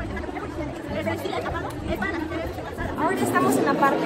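Voices chattering at a busy market stall, with a woman starting to speak close by near the end.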